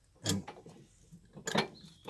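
A couple of faint metallic clicks about one and a half seconds in, from the crescent wrench on the PTO shaft as the TD-9's steering clutch assembly is turned round to the next bolt hole.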